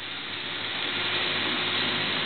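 Steady rushing of wind and water aboard a sailboat under way, growing slowly louder.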